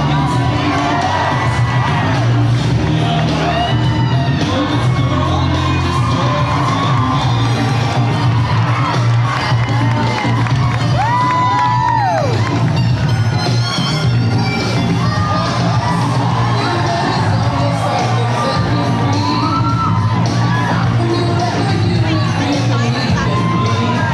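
Audience cheering and whooping over loud music with a steady bass line.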